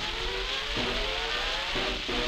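A 1937 Brunswick 78 rpm shellac record of a fox-trot dance band playing, the band's notes heard under heavy surface hiss and crackle from the worn disc.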